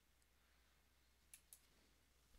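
Near silence, with two faint, short clicks close together about a second and a half in.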